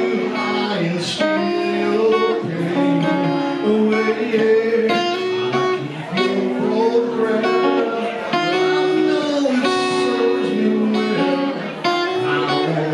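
Live solo electric guitar music: a single-cut electric guitar played through an amplifier, strummed chords ringing and changing about once a second.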